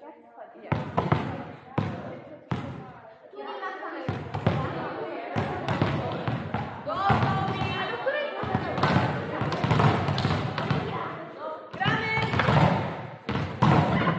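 Volleyballs being struck by hand and bouncing on a sports-hall floor, in many irregular sharp hits from several players at once.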